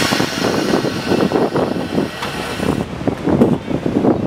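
Air hissing through a utility trailer's air-bag suspension, a loud steady hiss that cuts off suddenly about three seconds in.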